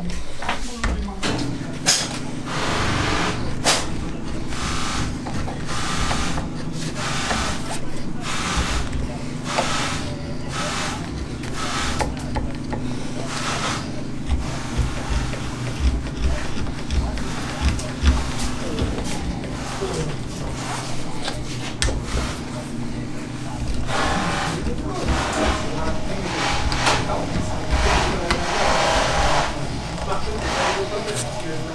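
Hand carving tool scraping and cutting into a briar pipe bowl in repeated short strokes, roughly one a second, as the bowl is hand-rusticated. A steady machine hum runs underneath and stops about four-fifths of the way through.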